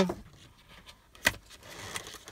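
Hands lifting plastic-wrapped accessories out of the cardboard tray of a phone box: light handling noises with one sharp click about a second in.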